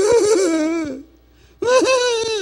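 A man's voice giving two drawn-out, wavering wails, each about a second long, higher than his speaking voice. It is a mock moaning melody, imitating a lament sung as a groan.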